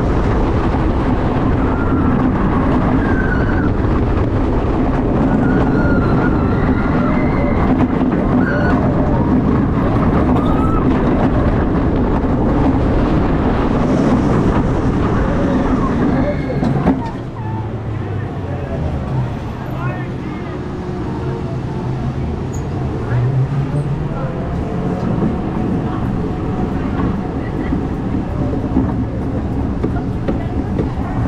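Wind rush and track roar from a Vekoma Giant Inverted Boomerang coaster train running its course, with riders screaming over it. About halfway through, the rush drops sharply as the train slows on the spike, then runs on more quietly as the train rolls back toward the station.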